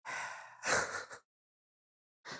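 A woman's breathy sigh with no voice in it: a softer breath, then a louder exhale that stops a little past halfway. It is a sigh of mild disappointment.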